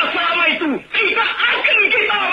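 Only speech: a man's impassioned voice declaiming in Indonesian, heard through an old recording that sounds thin, with no highs. The voice breaks off briefly a little before one second in.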